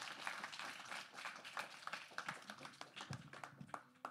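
A small audience applauding with rapid hand claps that thin out and die away near the end.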